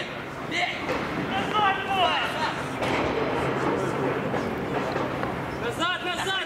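Men shouting short calls across a football pitch during play, with several voices overlapping, over a steady outdoor background noise.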